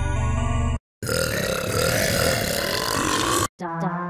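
Tone2 Electra 2 software synthesizer playing vocal-category presets one after another. A sustained, bright pitched chord cuts off under a second in. After a short gap comes a dense, gritty voice-like sound lasting about two and a half seconds. After a brief break a new pitched preset starts with stepping notes near the end.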